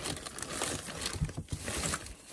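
Plastic bags rustling and crinkling as a hand rummages through a plastic storage tote, with a few light knocks against the tote.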